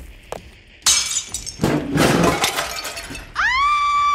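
Foley glass breaking: a sharp shattering crash about a second in, then a longer, heavier smash with clattering debris. Near the end a long high-pitched cry rises, holds and falls away.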